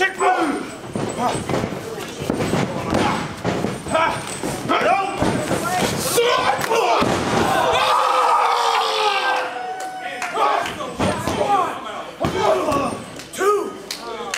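Wrestlers' bodies hitting the ring canvas with several heavy thuds and slams, among shouting voices, with one long shout in the middle.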